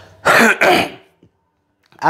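A man clearing his throat: two quick, rough bursts in close succession about half a second in.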